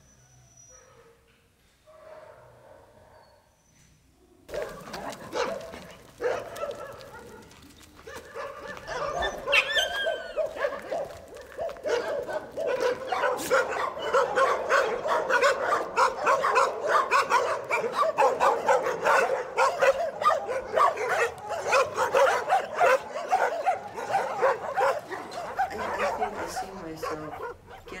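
Many dogs in shelter pens barking, yelping and howling together. The sound starts a few seconds in and builds into a loud, continuous din over the second half, with a high rising howl about a third of the way through.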